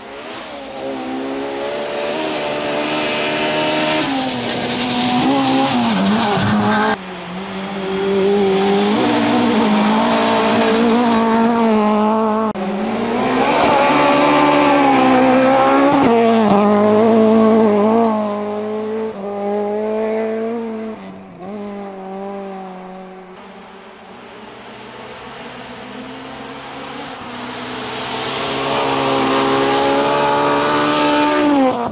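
Honda Civic rally car driven hard on a gravel stage. Its engine revs high and climbs and drops through gear changes as it approaches and passes, with tyre and gravel noise. The sound jumps abruptly a few times where separate passes are cut together, and the last approach builds louder near the end.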